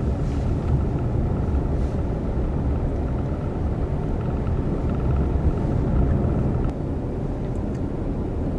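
Steady low rumble of a car's engine and road noise heard from inside the cabin while driving, easing slightly near the end.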